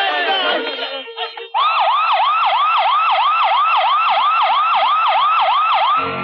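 Excited voices for about the first second, then, after a brief drop, a loud siren sounding a fast yelp, its pitch sweeping up and down about three times a second: an ambulance siren.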